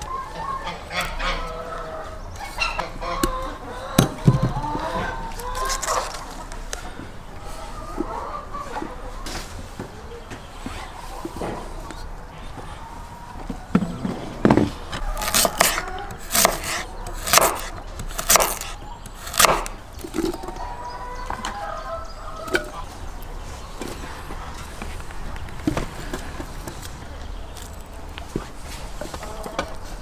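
A kitchen knife slicing a carrot into rounds against a wooden cutting board: a run of about eight sharp chops roughly half a second apart, starting about halfway through. Bird calls come and go before and after the chopping.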